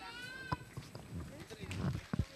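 A person's high-pitched, drawn-out call that rises and then holds, fading out about half a second in, over low background chatter, with a sharp knock just after it.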